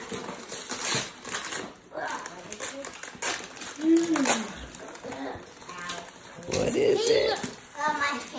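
Wrapping paper rustling and tearing in short bursts as a present is unwrapped, with brief children's vocal sounds in between.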